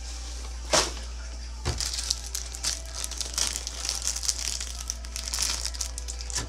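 Plastic card sleeves and top loaders being handled, crinkling and rustling, with a sharp click about a second in, over a steady low hum.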